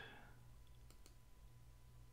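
Near silence with a faint steady hum, broken by a couple of soft computer mouse clicks about a second in as the screen-recording menu is worked to stop the recording.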